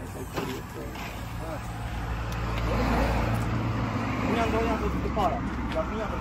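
Low, steady drone of a vehicle engine, most likely the turbo-diesel of the Volkswagen van being inspected, growing louder about a second in and peaking midway. Men's voices talk over it, low and unclear, with a few small knocks.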